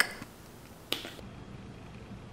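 An egg cracked once against the rim of a bowl: a single sharp crack about a second in.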